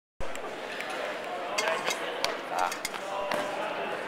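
Echoing ambience of a large indoor sports hall: background voices over a steady din, with scattered sharp knocks and thuds.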